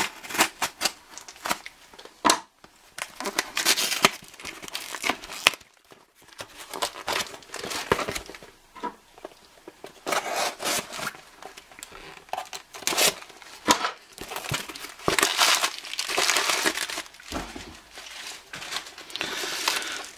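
A utility knife slitting the packing tape on a cardboard shipping box, then clear plastic bags and packing material crinkling and rustling as the box is unpacked, with irregular clicks and knocks of handling.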